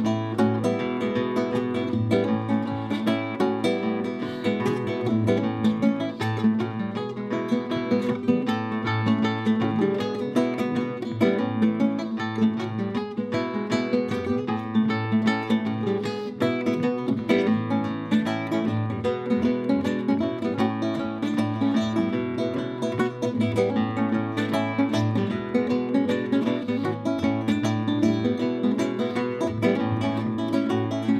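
Solo flamenco guitar played without a break: a continuous run of quickly plucked notes on nylon strings.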